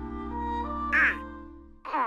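Cartoon orchestra holding soft brass and woodwind chords, broken by Donald Duck's quacking cartoon voice: a short, loud squawk about a second in and a falling quacky call near the end as the music drops away.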